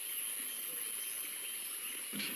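Faint steady hiss with no distinct events.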